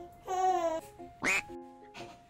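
Edited-in cartoon sound effects over light background music: a short quack-like comic sound, then a quick rising whistle-like sweep, with held music notes underneath.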